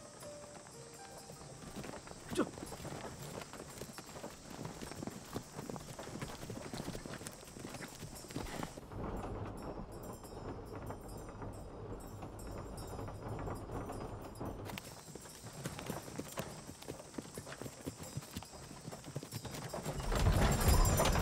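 Horses' hooves clip-clopping steadily as a horse-drawn carriage travels along a dirt track, with one sharper knock about two seconds in. For several seconds in the middle the sound is muffled, as heard from inside the carriage, with a low rumble of the moving cab.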